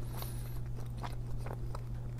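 Faint chewing of a bagel sandwich with a few soft mouth clicks, over a steady low hum.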